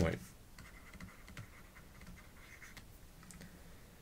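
Faint scratching and a few light taps of a stylus writing on a pen tablet.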